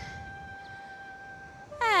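Soft background music: a single sustained note held steadily through a pause, over a faint low rumble.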